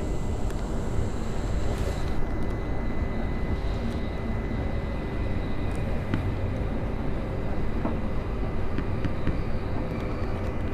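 Interior running noise of a Class 707 Desiro City electric multiple unit under way: a steady low rumble of wheels on rail, with a faint steady high whine and occasional light clicks.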